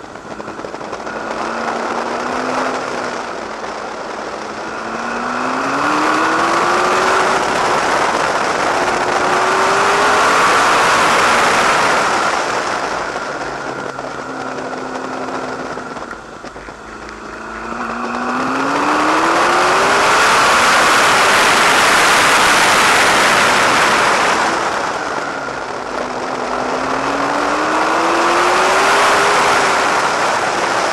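McLaren MP4-12C's twin-turbocharged V8 pulling hard around a track, its pitch climbing through the gears several times over a steady rush of wind and tyre noise. The engine eases off three times, as if for corners, and then picks up again.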